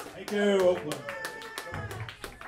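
Audience applauding as a live rock song ends, with a voice calling out loudly about half a second in.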